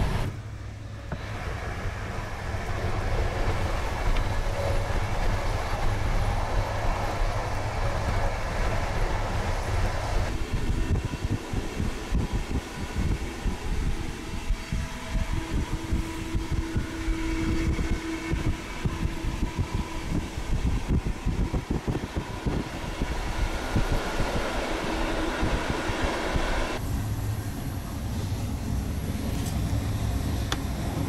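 Sleeper train carriage running on the track, heard from inside: a steady low rumble and rattle. The sound changes abruptly twice, and a single held tone sounds for a few seconds in the middle.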